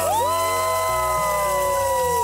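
A group of children and adults cheering together in one long held shout that slowly falls in pitch, over low background music.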